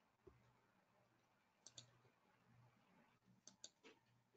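Near silence with a few faint, sharp clicks: a close pair about a second and a half in, and three more near the end.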